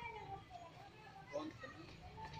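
Faint voices of several people talking in the background, with a light knock about one and a half seconds in.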